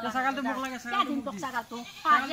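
Goat bleating repeatedly, each bleat with a quavering voice.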